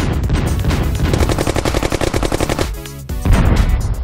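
Rapid-fire, machine-gun-like sound effect marking a toy robot's rocket-punch attack: a fast, even string of shots, a short dip, then a louder burst near the end, over background music.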